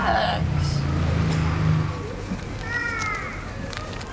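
A young woman laughing briefly at the start over a low background hum, then a short chirping animal call about three quarters of the way through.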